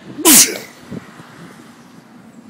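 A person sneezing once, very loud and close to the microphone, about a quarter of a second in.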